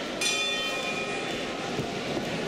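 Ring bell struck once, ringing out and fading away over about a second: the signal to start the round.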